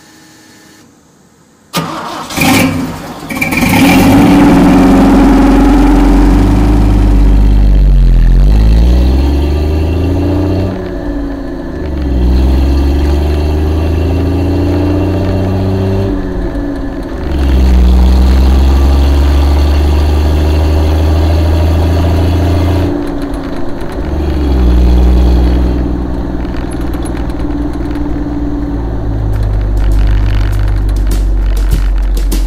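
The 4.2-litre 2F inline-six of a 1977 Toyota FJ40 Land Cruiser, freshly rebuilt with Holley Sniper fuel injection, cranks and fires about two seconds in and revs up. It then runs steadily under way, its note dipping and climbing back several times as it goes through the gears.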